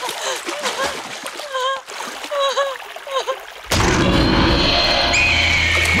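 Rushing, splashing stream water under a woman's short, repeated cries and gasps. About two-thirds of the way in, this cuts abruptly to a loud film score with a deep drone, and a high held scream-like tone falls away near the end.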